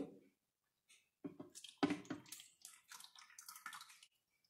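Cooking oil poured from a cup into a plastic blender jar, splashing onto the bottom of the jar in an uneven run that begins about a second in.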